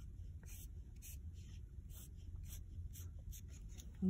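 Water-based felt-tip marker scratching short dashes onto watercolour paper: quick, faint strokes, about three a second.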